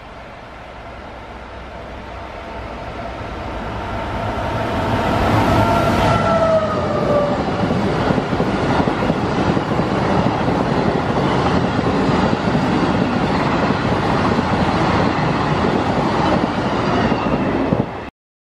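Venice Simplon-Orient-Express passenger train, hauled by an SNCF BB 26000 electric locomotive, approaching and passing at speed. The sound grows over the first five seconds, and a whine drops in pitch as the locomotive goes by. Then comes a steady rush and rumble of the coaches rolling past, which cuts off suddenly at the end.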